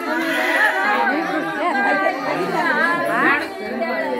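Several women's voices talking over one another, with one quick rising voice about three seconds in.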